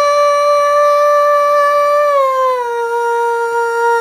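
Solo female voice in Carnatic singing in raga Behag, holding one long sustained note. Two to two and a half seconds in, it glides smoothly down to a lower note and holds that, over a faint steady drone.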